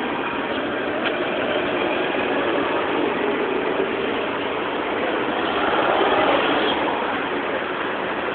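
Steady outdoor background noise, with faint distant voices in it.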